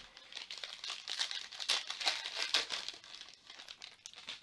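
A 2020 Panini Prizm Football hobby pack's foil wrapper being torn open and crinkled by hand: a dense run of crackles, loudest in the middle, that eases off near the end.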